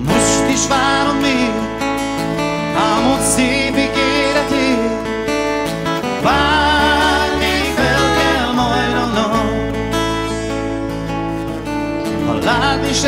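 Live band song: a man sings a melody with vibrato over a strummed acoustic guitar, with a bass line underneath.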